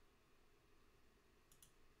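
Near silence: room tone, with a couple of faint computer mouse clicks about one and a half seconds in.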